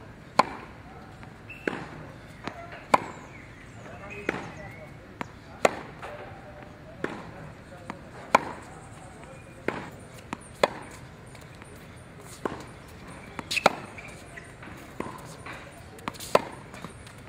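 Tennis ball struck hard by a racket on forehand groundstrokes, a sharp crack about every one and a half seconds, with fainter ball impacts between the hits.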